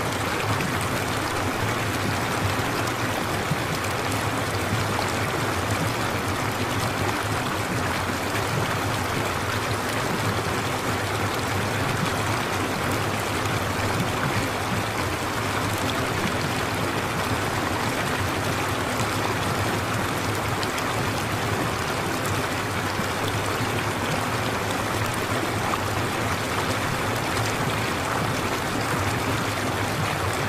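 Steady, even rushing noise like a running stream, with no change in level or pattern.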